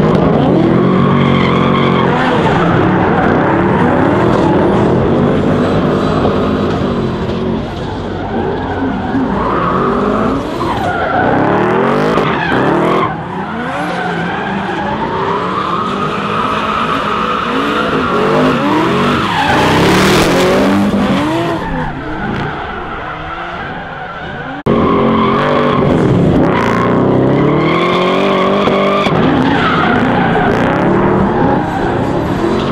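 Two drift cars, a Toyota Supra and a Volvo 240, drifting in tandem: engines revving up and down hard with tyres squealing through the slides. The sound jumps abruptly in level at cuts in the footage, the clearest one near the end.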